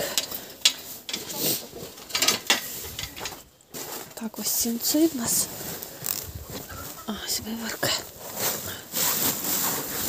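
Dry hay and sacking rustling and crackling as they are handled, in a run of short irregular crackles. A few brief low voice-like sounds come about halfway through and again near the end.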